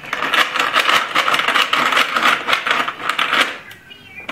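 Plastic baby activity-center toy clattering and rattling as its spinner and beads are worked by hand, a dense run of clicks that stops about three and a half seconds in.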